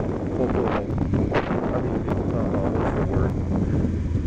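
Wind rushing over the microphone on top of a steady low vehicle drone, as from a moving vehicle.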